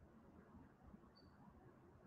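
Near silence: faint low background noise on a dropped-out call line, with one brief faint high-pitched tone just over a second in.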